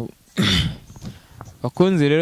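A person clears their throat once, a short harsh burst about half a second in; speech starts near the end.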